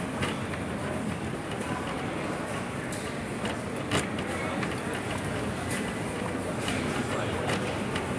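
Stiff PVC rain jacket rustling and crinkling as the wearer walks, with irregular sharper crackles, the loudest about four seconds in, over a steady background noise.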